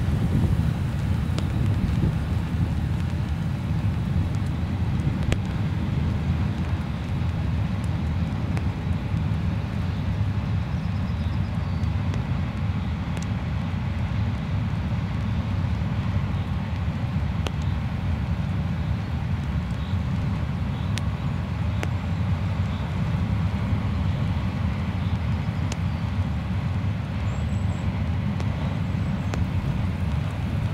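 Freight train of wagons loaded with railway sleepers rolling past, a steady low rumble of wheels on the rails with a few faint clicks, and wind on the microphone.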